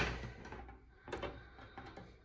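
Faint handling noise of wire cutters and a metal wire wreath frame being repositioned on a table, with a light click about a second in.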